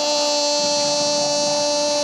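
A football commentator's drawn-out goal cry, a single high note held steady on one long breath.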